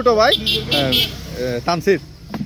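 Men's voices over the rushing noise and low hum of a passing motor vehicle, loudest in the middle of the stretch.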